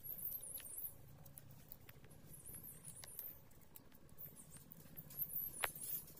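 Two puppies licking and chewing at dry soil: faint, irregular small mouth clicks and scratches, with one sharper click a little before the end.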